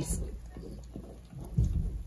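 Faint handling sounds: a few soft, dull thumps as a glass pot lid and fabric are shifted and a marker is picked up. The thumps are strongest in the second half.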